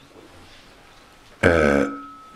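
A pause of quiet room tone, then about a second and a half in a man's short drawn-out vocal sound lasting about half a second, low and throaty.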